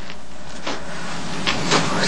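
Steady low hum and hiss of background room tone, with a faint short sound about two-thirds of a second in.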